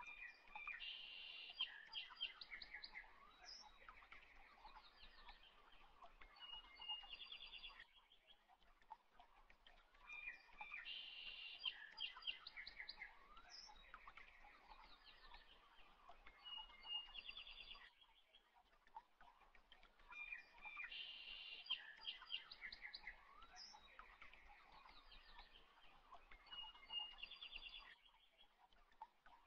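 Faint birdsong: chirps and quick trills that repeat as an identical loop about every ten seconds, with a short lull before each repeat.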